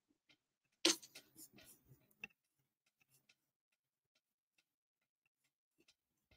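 A sharp knock about a second in, followed by a short spell of faint clicks and rustling, then a few scattered faint ticks.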